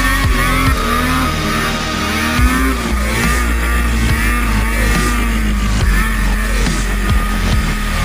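2003 Ski-Doo Summit Millennium Edition snowmobile's two-stroke engine running under throttle, its pitch rising and falling as the rider works the throttle, heard with background music.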